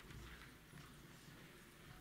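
Near silence: faint room tone of a large hall, a low steady hum with a few soft, faint knocks.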